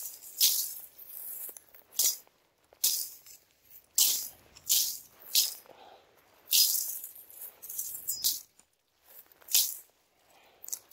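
Machete swings hacking through dry brush and tall grass: about ten short, crisp swishes and crackles of dry stems at irregular intervals, some sharper and some longer, with a longer stretch about six and a half seconds in.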